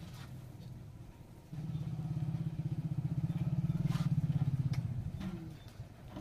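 A small engine running nearby, with a rapid low pulsing, starting about a second and a half in, swelling louder and then fading away after about four seconds.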